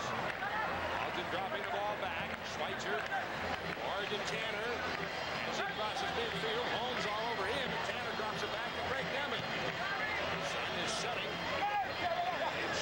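Stadium crowd of several thousand: a steady hubbub of many overlapping voices chattering and calling out during open play.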